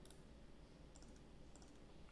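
Near silence with a few faint computer keyboard key clicks, about a second in, as code is edited.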